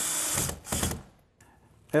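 Cordless drill driving a fastener through a window's nailing flange: a steady whirring noise that stops about half a second in, followed by two short bursts.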